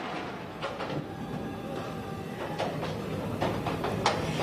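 NASCAR stock cars' V8 engines running on the track, heard as a steady, noisy rumble with a few short knocks.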